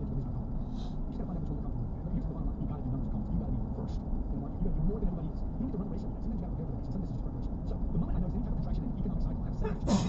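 Steady road and engine rumble heard from inside a car cabin while driving, with a faint voice underneath. A short laugh comes right at the end.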